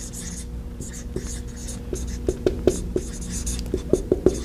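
Dry-erase marker writing on a whiteboard: a run of short scratchy strokes and light ticks as a word is written out letter by letter.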